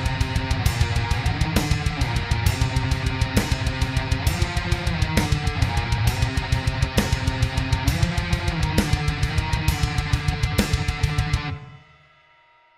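Heavy metal song demo playing back at 133 bpm, its recorded tempo before being sped up: distorted electric guitars over a fast, dense kick drum with regular cymbal hits. It stops suddenly near the end.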